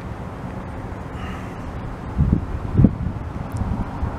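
Outdoor background of wind on the microphone and road traffic: a steady low rumble, with two dull thumps a little after halfway.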